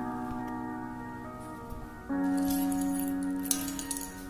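Background music: steady held chords that change to a new, louder chord about two seconds in, with light clicking over the second half.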